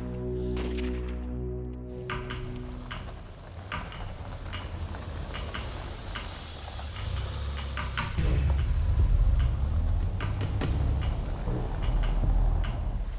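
For the first two seconds, steady music chords with one or two rifle shots from the firing range. After that, an olive Land Rover Defender drives across a dirt yard with scattered sharp clicks, and its low engine rumble grows louder from about eight seconds in.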